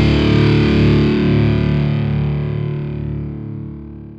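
Closing sustained chord of a rock song, with distorted electric guitar, held and fading away steadily as the track ends.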